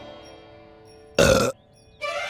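A single short, loud burp a little past a second in, after background music fades away.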